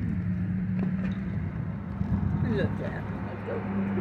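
A steady low engine hum that holds one pitch, with faint voices now and then.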